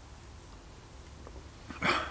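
A man's short, loud, gruff exhale near the end, just after swallowing a drink, following a quiet stretch.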